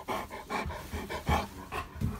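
Labradoodle panting quickly, close to the microphone, several short breaths a second.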